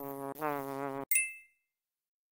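Cartoon bee buzzing sound effect, a steady buzz with a slightly wavering pitch that breaks briefly and stops about a second in. It is followed by a short, bright ding.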